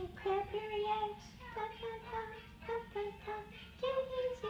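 A high voice singing a made-up song in held notes that step up and down, the drawn-out middle of the line 'Tini's eating Cadbury eggs'.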